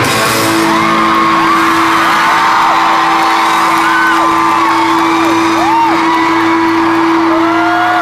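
A rock band's last note held and ringing steadily as the song ends, with the arena crowd screaming and whooping over it in many short rising-and-falling cries.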